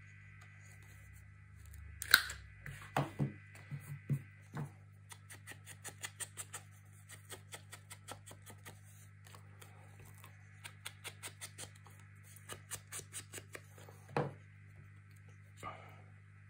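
Ink blender tool dabbed repeatedly along the edge of a cardstock strip: rapid runs of light taps, about four to six a second, with a few louder knocks. A steady low hum runs underneath.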